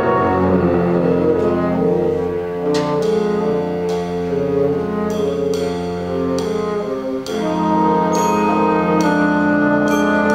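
Big band of saxophone, trombones, trumpets and tuba playing live, holding full sustained brass chords. A steady beat of sharp percussion strikes comes in about three seconds in, and the band drops back briefly near seven seconds before the full sound returns.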